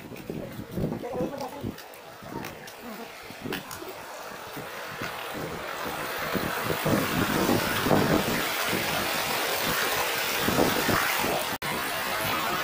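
Stream water rushing over rocks, growing louder over the first half and then holding steady, with irregular low rumbles underneath. The sound cuts out for an instant near the end.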